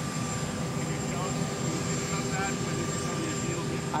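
Steady drone of a running jet aircraft, with a thin high whine over it.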